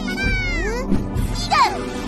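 Cartoon children's voices shouting cheers in high, gliding pitch, two loud calls about a second apart, over background music.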